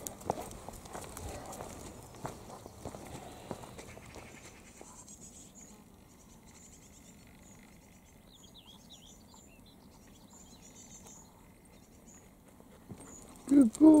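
Footsteps and rustling on a dirt path for the first few seconds, then a quieter outdoor stretch with a few faint high bird chirps about eight to nine seconds in.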